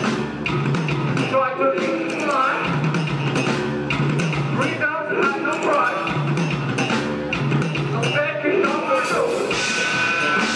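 A rock band playing live, with electric bass, drum kit and electric guitar, and a voice at the microphone over the band.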